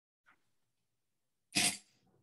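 A single short cough about one and a half seconds in, otherwise near silence.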